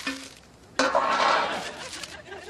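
A short metallic clink, then about a second of crackly rustling and rattling as a plastic bag of hard candy is taken out from behind a car's wheel hubcap.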